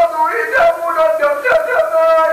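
A man singing a high, drawn-out melodic line in the Amazigh inchaden style of sung poetry, his voice sliding and bending between held notes.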